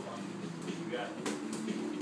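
A man's voice talking, with faint background music and one sharp knock about a second and a quarter in.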